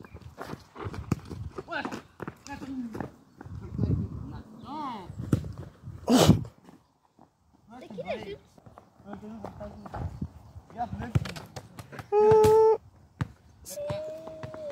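Boys calling out and shouting during a football kickabout on a dirt path, with scuffing footsteps and sharp knocks of the ball being kicked. A loud burst comes about six seconds in, and a long held shout a couple of seconds before the end.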